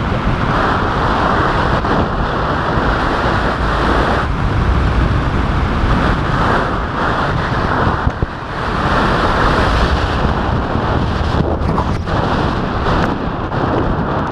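Rushing air of a tandem parachute descent buffeting an action camera's microphone, loud and swelling and easing every few seconds.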